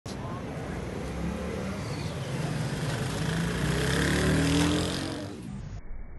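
A motor vehicle's engine on the street, growing louder with its pitch rising to a peak about four and a half seconds in, then fading, over the murmur of people talking.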